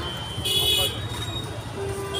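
Busy street traffic with a steady low rumble, and a short high-pitched vehicle horn toot about half a second in.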